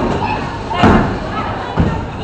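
Bowling pins crashing as a ball hits them: one brief loud crash about a second in, with a smaller thump near the end, over the chatter of a bowling alley.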